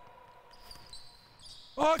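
Faint sounds of live basketball play on a wooden gym court: a ball bouncing and a few thin high squeaks, with a man's voice coming in near the end.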